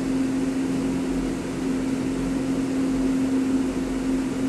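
Steady mechanical hum holding one constant low tone with fainter overtones, like a motor or fan running.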